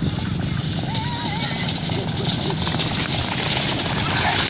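Horse-drawn racing carts galloping closer, with hooves and cart wheels growing louder near the end as the teams pass close. Underneath runs a steady rumble of motorcycle engines, and voices are shouting.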